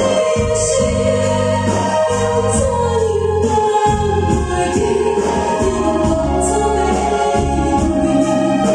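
A woman singing a Mandarin/Taiwanese pop ballad live into a microphone, amplified over accompanying music with a steady beat.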